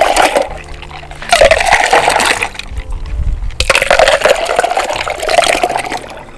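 Pink milk sarbath poured in a thick stream back and forth between a plastic measuring jug and a steel cup to mix it. The liquid splashes into the vessel in long pours with short breaks: one ends just after the start, and two more run from just over a second in to near the end.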